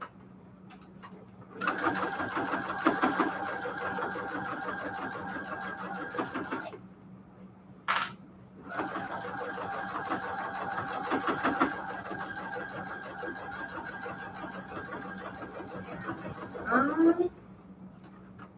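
Baby Lock computerized sewing machine stitching in two steady runs, about five seconds and then about eight seconds, with a single sharp click in the pause between them. The second run ends with a short rising whir as the machine stops.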